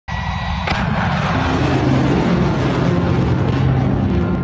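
Missile launch: a loud, even rocket-motor roar that starts suddenly, with a sharp crack about half a second in. Low, steady music tones build underneath from about a second in.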